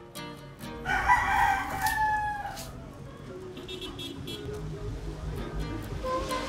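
A rooster crows once, about a second in: a single long call that drops slightly in pitch as it ends.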